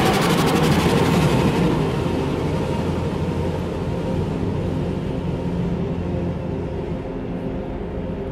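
Reversed soundtrack: a dense, rumbling wash of noise with a few steady low tones, loud from the start and slowly fading.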